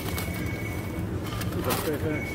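Supermarket background of a steady low hum with a thin high tone, as from refrigerated display cases. Plastic meat trays are handled, with a few brief crinkles near the end.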